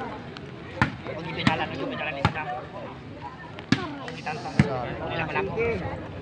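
A volleyball struck by hand during a rally: five sharp slaps at uneven gaps of about a second through the first five seconds.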